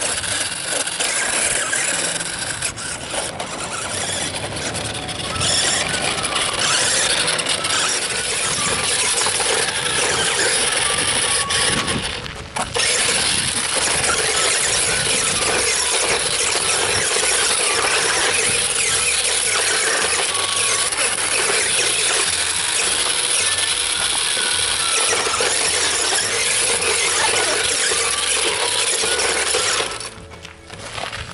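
Rampage Road Rustler 4x4 remote-control toy ATV driving, its small electric motor and plastic gears whining loudly and steadily. There is a brief let-up about halfway, and the sound cuts off suddenly at the very end as the ATV tips onto its side.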